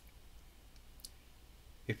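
Two faint clicks from a computer mouse as the web page is scrolled, over a low steady hum.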